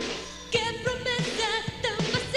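A woman singing a pop song with wide vibrato over a backing band with a steady kick drum about three beats a second. The voice pauses briefly and comes back in about half a second in.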